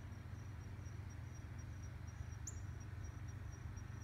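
A high, thin insect trill, pulsing evenly without a break, over a steady low background rumble, with one brief high chirp about halfway through.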